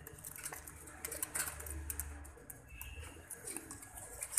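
Domestic pigeons in a wire-mesh cage: scattered light clicks and taps, with a faint low coo late on.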